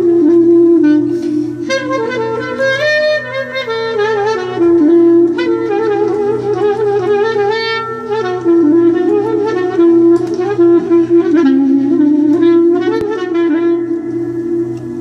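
A 1964 Orsi Milano clarinet playing an ornamented melody with quick runs and wavering turns, over a steady, evenly pulsing low accompaniment.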